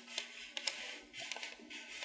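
A paper strip being pulled slowly across the hot soleplate of an upright clothes iron: a faint dry rustle with a few light ticks.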